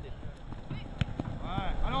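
Outdoor touchline ambience: wind rumbling on the microphone under faint distant voices, with one sharp knock about a second in. A man's voice comes in right at the end.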